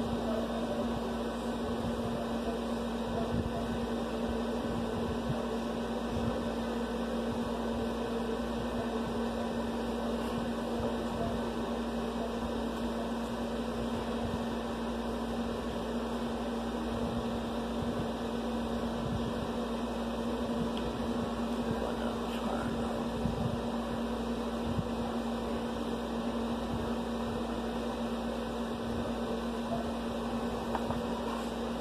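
A steady machine hum with one constant low tone over an even noise.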